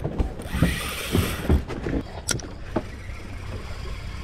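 Spinning reel and rod worked against a hooked fish: irregular mechanical clicks and thumps from the reel and handling, over a low rumble, with a brief hiss about half a second in and a sharp click just past two seconds.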